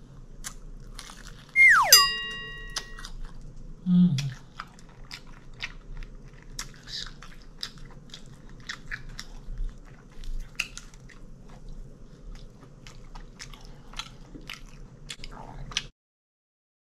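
Close-up crunchy bites and chewing of fried chicken, heard as many small irregular crunches. A short loud falling tone comes just under two seconds in and rings on for about a second.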